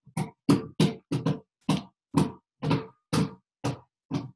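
A young child making a rapid string of short, sharp mouth noises, about three a second.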